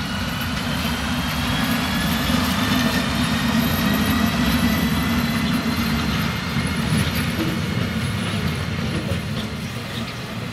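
DB Class 151 electric locomotive passing close by: a low rumble of wheels on rail with a slowly rising whine. It grows louder to a peak a few seconds in, then eases off as the locomotive moves away, with a few rail clicks near the end.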